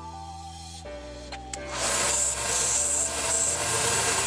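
Background music, then from about two seconds in a bench belt sander grinding an aluminium capacitor case: a loud, steady, hissing grind with a high edge.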